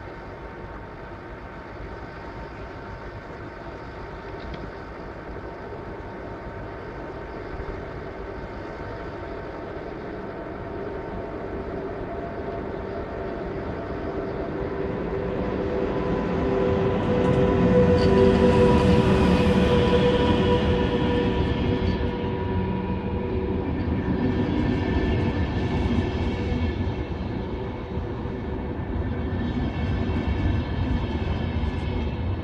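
VR Sr2 electric locomotive hauling an InterCity train of double-deck coaches as it pulls into a station. The rumble and a steady whine grow louder as the train approaches and are loudest as the locomotive passes, a little past halfway through. The coaches then keep rolling by.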